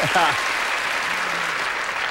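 Studio audience applauding steadily, with a brief voice over it at the start.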